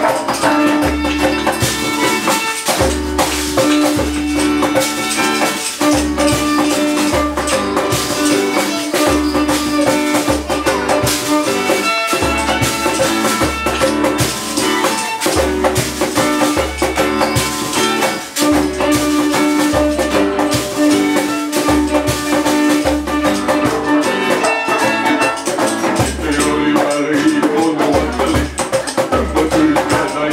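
A small acoustic band playing an instrumental passage: fiddle holding long notes over strummed acoustic guitar, a hand drum keeping a steady low beat, and a shaker rattling on top.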